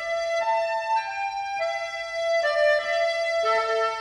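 Instrumental passage of a 1958 slow-waltz dance-band record: a keyboard instrument plays a slow melody of held single high notes, with lower notes coming in near the end.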